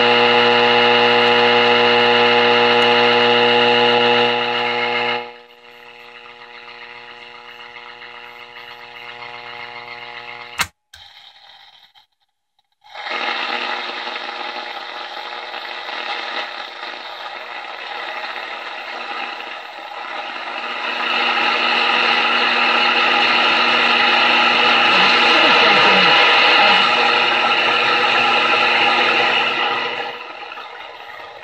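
Zenith Trans-Oceanic H500 tube radio's loudspeaker while it is tuned between stations: a steady buzzing tone that drops in level about five seconds in, a click near the middle, a moment of silence, then a hiss of static that grows louder toward the end.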